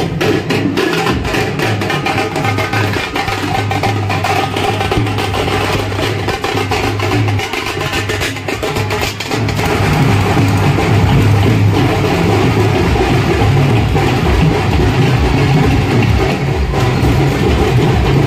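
Procession band drums playing a fast, dense beat. About halfway through, the music gets louder, with a heavier steady bass.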